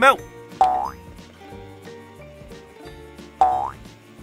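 Two short rising boing sound effects about three seconds apart, as Play-Doh shapes drop off the toy conveyor into its tray, over light, cheerful background music.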